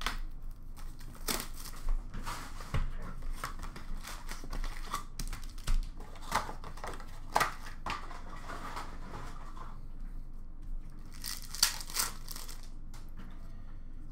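Foil trading-card packs being torn open and their wrappers crinkled, in irregular rustles and short rips, with a few sharper tears near the end.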